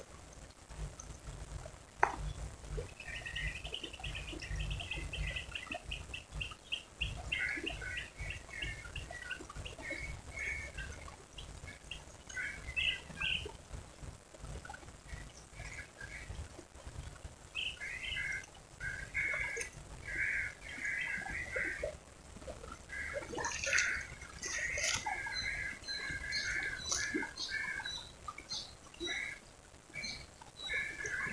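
Small birds chirping and calling repeatedly, in quick trills and short chirps, over a low steady rumble. A single sharp click about two seconds in.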